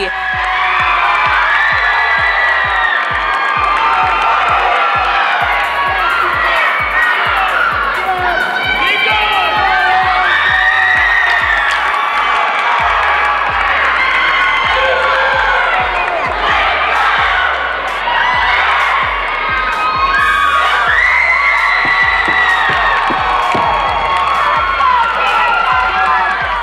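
A high-school competitive cheer squad yelling and cheering together, many girls' voices shouting at once, steady and loud throughout.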